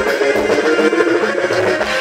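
Live band music played loud through a stage sound system, with electric guitar over a steady beat and no singing.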